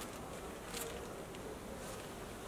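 Faint, steady background hum with low room noise and no distinct events.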